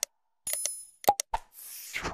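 Sound effects of an animated subscribe button: mouse clicks, a short ringing bell-like ding, a few more quick clicks, then a rising whoosh near the end.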